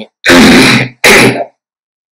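A man clearing his throat in two short bursts about a second apart.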